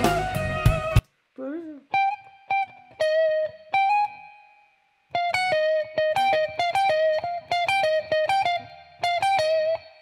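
Electric guitar in a clean tone. A second-long snatch of full-band playback cuts off about a second in. Then single picked notes come, a few at first, and from about five seconds in a fast, even run of notes up and down the neck.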